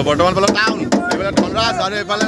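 Several people's voices calling out loudly, with sharp knocks or claps about twice a second.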